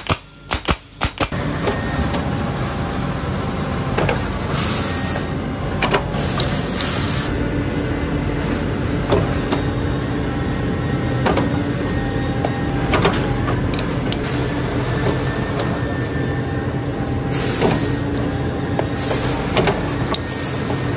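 A pneumatic tacker fires a few quick shots at the start. Then a shoe-factory lasting machine runs with a steady hum and occasional knocks, and short hisses of compressed air are released several times.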